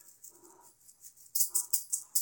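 Shiny wire-covered juggling balls rattling and jingling in the hands as a five-ball run begins, in quick crisp jangles from about a second and a half in.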